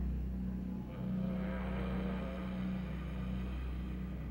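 Eerie horror-film score: a steady low rumbling drone, with a wavering, higher-pitched swell that rises about a second in and fades out before the end.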